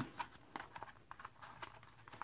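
Faint light clicks and rustles of a card being handled in a plastic binder page pocket as it is drawn out.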